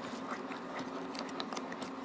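A nylon spoon stirring a thick, wet chana dal halwa mixture in a nonstick pan on high heat, with many small irregular clicks and pops from the mixture and the spoon as it cooks down its liquid. A steady low hum runs underneath.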